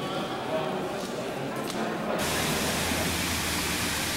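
Indistinct murmur of voices in a large hall. About two seconds in it cuts abruptly to the steady splashing rush of the Fontaine Saint-Michel's cascading water.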